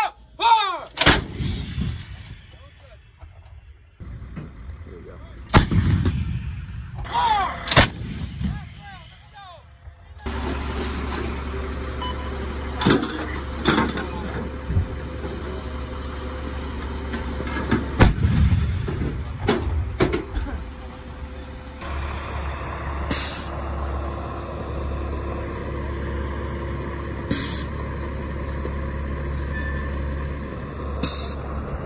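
Towed artillery howitzer firing: loud booms with long rumbling tails, heaviest about a fifth and about two-thirds of the way in, mixed with sharper cracks and clanks. From about a third of the way in a steady low engine-like drone runs underneath.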